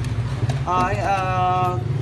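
A man's drawn-out hesitation sound, "à", held for about a second, over a steady low hum.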